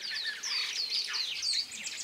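Birds chirping: a quick run of short, high chirps, several a second, from more than one bird.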